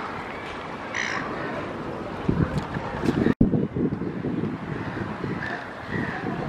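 A bird gives one short call about a second in, over steady waterfront noise with low buffeting on the microphone. The sound drops out for an instant just past the middle.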